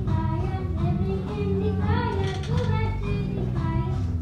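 Elementary-school children singing a song with instrumental accompaniment, a clear sung melody over a steady backing.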